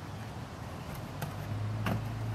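Cardboard box being handled in a car trunk: two sharp knocks, the second louder, as the box is gripped and shifted, over a low steady hum.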